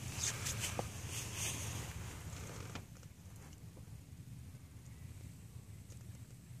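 Quiet outdoor background on open water: a faint low rumble and hiss, with a few soft ticks and rustles in the first three seconds, growing quieter after that.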